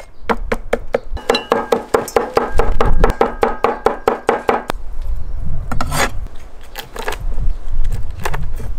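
A steel cleaver chopping pickled chilies and chili bean paste on a wooden cutting board: a quick, steady run of chops for the first half, then slower, scattered chops.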